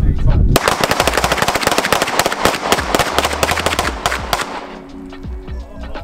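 Rapid gunfire from several handguns fired at once, a dense string of shots that starts about half a second in and stops near four and a half seconds.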